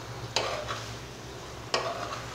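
A steel spoon scrapes and stirs a dry potato and bitter gourd stir-fry in a metal frying pan. There are two sharp scrapes about a second and a half apart, over a quiet sizzle of frying.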